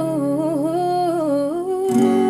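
A woman hums a slow wordless melody, holding and gently bending the notes, over a ringing acoustic guitar chord. A fresh strum comes just before the end.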